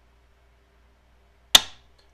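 A single sharp metallic click from the AR-15's mil-spec trigger group about one and a half seconds in, with a brief ring: the trigger resetting at the very end of its travel.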